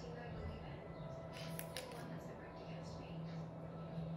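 Steady low hum with faint background voices, and a quick cluster of small sharp clicks about a second and a half in.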